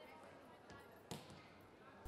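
Near silence with faint thuds of a volleyball being bounced on a sports-hall floor before a serve. The clearest thud comes about a second in.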